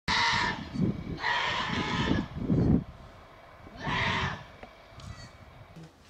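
Sheep bleating: three calls, the middle one the longest, with a loud low rumbling noise under the first two.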